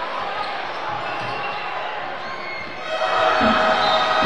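Live basketball arena sound during the last seconds of play: ball bouncing on the hardwood court over crowd noise. About three seconds in, a loud sustained tone comes in as the game clock runs out.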